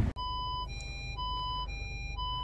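A SEAT Ibiza's electronic warning tone alternates between a higher and a lower beep, about once a second, and sounds like a fire truck.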